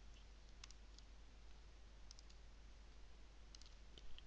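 Faint computer mouse clicks, a few scattered single clicks and quick clusters, over near-silent room tone.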